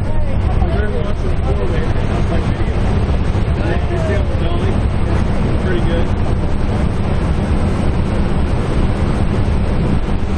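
Jump plane's engine running with a loud, steady drone heard from inside the crowded cabin, with faint muffled voices under it.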